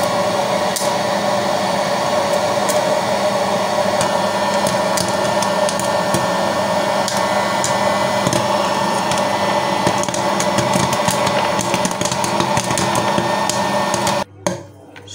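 Electric hot-air popcorn maker running, its blower whirring steadily, with corn kernels popping as sharp clicks that come more and more often in the second half as the popping gets going.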